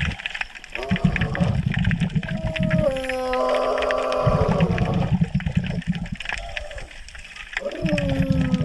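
Wordless vocal sounds over a continuous low crackling water noise. There are short sliding pitches about a second in, then a held tone from about two and a half seconds in that steps down once and holds for two seconds.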